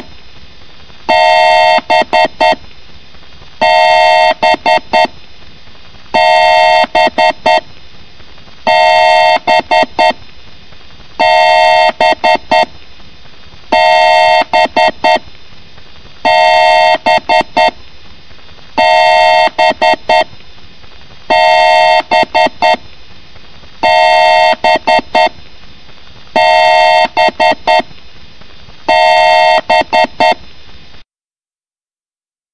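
A loud two-tone electronic beep sound effect, repeating about every two and a half seconds: a long beep followed by a quick string of short beeps, about a dozen times over.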